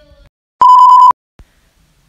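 A single loud electronic beep, a steady high-pitched tone lasting about half a second, with a slight warble.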